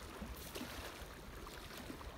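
Faint, steady lakeside ambience: small waves lapping on a stony shore, with a low rumble of wind on the microphone.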